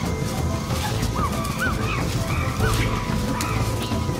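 An animal giving several short, high yelping calls, each rising and falling in pitch, over a dense noisy background with music.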